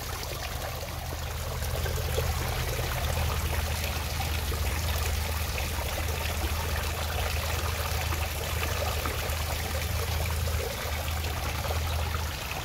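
Koi pond water feature running: water trickling and splashing steadily into the pond, with a steady low hum underneath.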